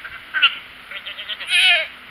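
Goats bleating, hollering for their supper: a couple of short bleats and a quick stuttering run of calls, then a loud, wavering bleat near the end.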